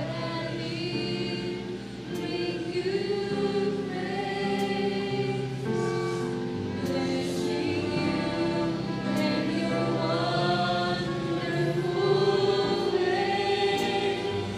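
Mixed choir of young men and women singing a gospel worship song, accompanied by electronic keyboard.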